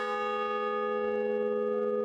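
A large hanging bell ringing after a single strike. Its low hum and a stack of higher overtones hold steady at an even level.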